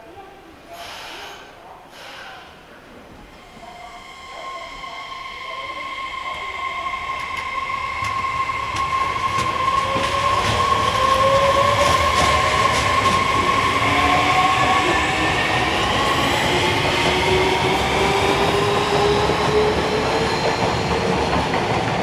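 A Fukuoka City Subway 2000N series train pulling away from a station: the traction motors give off a whine made of several tones that slowly rise in pitch as it accelerates. It grows louder over the first ten seconds or so and then holds steady, with wheels clicking over rail joints.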